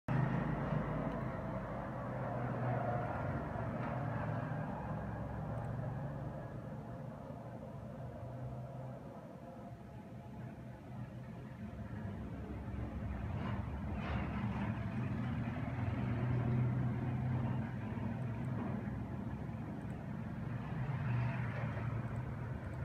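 Steady low background rumble with a hum, slowly rising and falling in level, with two faint clicks about two-thirds of the way through.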